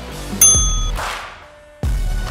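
A single bright electronic bell ding, an interval timer's signal that the work interval has ended, ringing out about half a second in and fading quickly. Electronic dance music with a heavy beat plays underneath.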